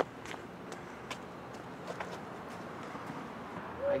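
A few faint, scattered footsteps on a concrete path over steady outdoor background noise; a boy's voice starts right at the end.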